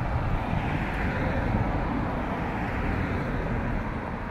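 Road traffic on a town street: the steady rumble of cars driving past, engine and tyre noise with no single sharp event.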